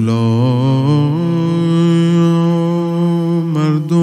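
A man's voice chanting one long held note of a Persian Shia mourning lament (rowzeh). The note steps up in pitch about a second in, is held with a slight waver, and breaks off near the end.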